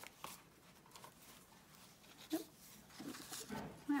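Faint rustling and handling of paper pages and cards in a junk journal as cards are pulled from a page pocket, with a couple of brief soft voice-like sounds a little past halfway.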